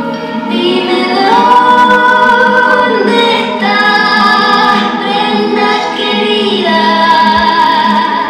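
Music: a woman's voice singing a slow melody in long held notes, changing pitch every second or two.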